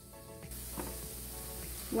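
Tofu, zucchini and onion sizzling in a stainless-steel skillet as a wooden spoon stirs them, under faint background music.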